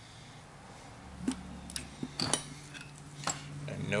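Pry bar and steel compressor pistons clinking against the aluminium case as the piston and swash-plate assembly of a seized 10-cylinder A/C compressor is levered out. After a quiet first second come a handful of short, sharp metallic clinks.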